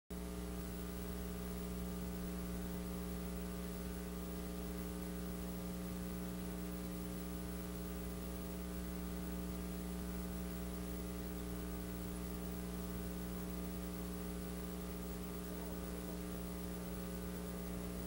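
Steady electrical mains hum: a low buzz with a stack of overtones and a faint high-pitched whine above it.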